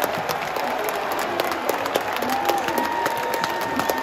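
Large stadium crowd applauding: steady, dense clapping with no break.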